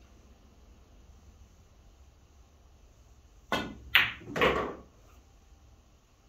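A pool shot: the cue tip strikes the cue ball with a sharp click, the cue ball clacks into an object ball about half a second later, and a third, longer and duller knock follows.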